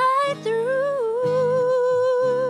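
A female voice sings long, held notes with vibrato over strummed acoustic guitar chords.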